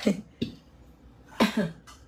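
A woman coughing briefly, twice, about a second and a half apart.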